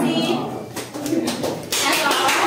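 Indistinct voices of a group of students chatting, with a brief burst of noise near the end.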